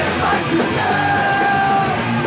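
Hardcore punk band playing live, loud and continuous: distorted guitars and drums under shouted vocals, with a long held note through the second half.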